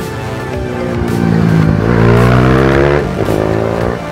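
Ohvale mini motorcycle engine revving as it rides past close by. It grows louder and climbs in pitch, then drops away about three seconds in, with background music underneath.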